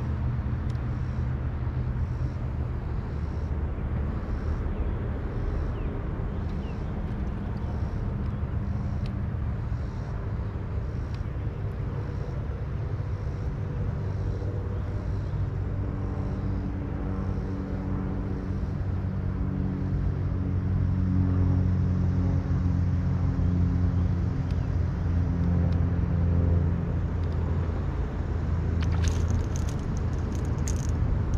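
Low, steady rumble of a boat motor running on the lake, growing louder in the second half. A few short sharp sounds come near the end.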